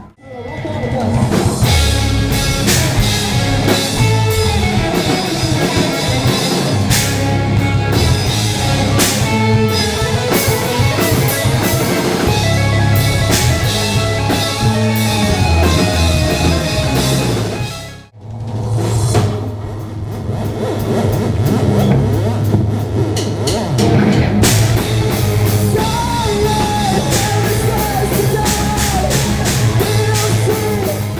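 Rock band playing live and loud: electric guitars, bass and drum kit in an instrumental passage. The sound cuts out abruptly about eighteen seconds in and comes straight back.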